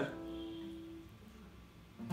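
An A minor chord on an acoustic guitar ringing out and fading away over about a second, leaving only faint room tone.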